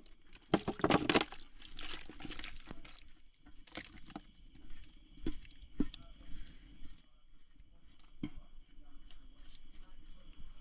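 Chicken stew being poured from a large aluminium cooking pot into a metal hot pot: a loud cluster of knocks and a wet slide of food about a second in, then scattered single knocks and scrapes of metal on metal as the pot is emptied.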